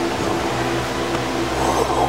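A steady low hum with an even hiss over it: background room noise from a ventilation or fan-type source.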